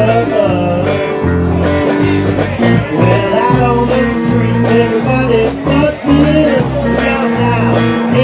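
Live band playing: electric guitar with drums and low bass notes on a steady beat.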